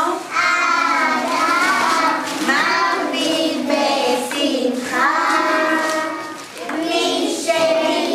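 Young children singing a Purim song, in phrases of held notes with short breaks between them.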